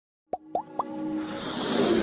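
Animated-logo intro sound effects: three quick rising pops about a quarter second apart, then a whooshing swell that builds steadily louder.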